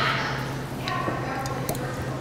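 Two light clicks about a second apart from glasses and a bourbon bottle being handled on a wooden bar, over a steady low hum.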